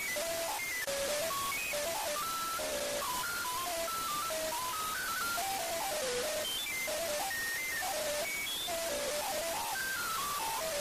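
Autotuned audio snapped to a major scale: a fast, ringtone-like string of short stepped notes jumping from pitch to pitch. A steady hiss runs underneath.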